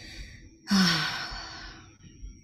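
A woman sighing. There is a breathy exhale at first, then about three-quarters of a second in a louder voiced sigh that falls in pitch and fades away.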